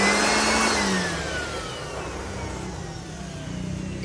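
Yellow DeWalt-branded corded electric hand blower whirring with a high whine that peaks about half a second in, then winds down with a steadily falling pitch as the motor coasts after being switched off.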